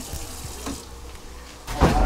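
Water running from a kitchen faucet into a sink, a steady splashing hiss.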